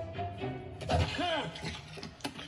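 Film soundtrack music from a television, with a short voice-like sound about a second in, its pitch rising and falling.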